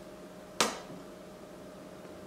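Quiet room tone with a faint steady hum, broken once, about half a second in, by a single short, sharp click.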